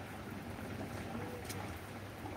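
Steady low outdoor background rumble and hum, with a single faint click about one and a half seconds in.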